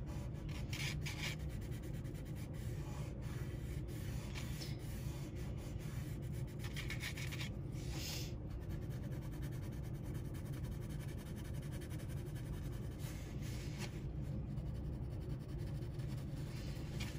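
Graphite pencil shading on paper: faint, light scratchy strokes, with soft rubbing as the shading is smudged in with a finger. A low steady hum sits underneath.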